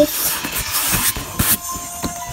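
Packaging being handled as a cardboard box is unpacked: rustling and crinkling with a few sharp clicks, dying down after about a second and a half.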